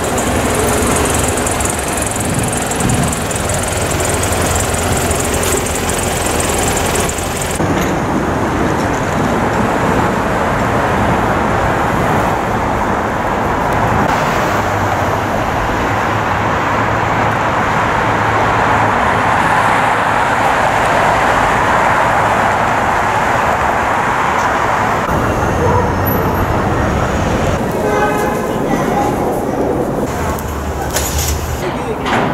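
Street traffic noise: a steady wash of passing cars and engines, with a low engine hum in places. The sound changes abruptly twice.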